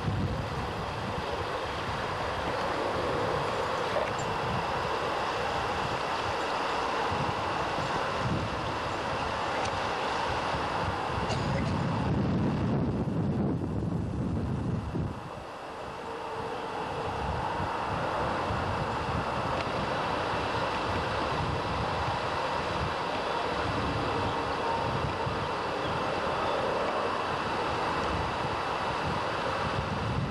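Wind buffeting a camcorder microphone: a steady rushing noise with a gusty low rumble that dips briefly about halfway through.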